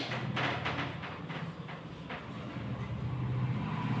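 Cloth duster rubbing across a whiteboard: a quick run of short wiping strokes in the first two seconds, then steadier rubbing, over a steady low hum.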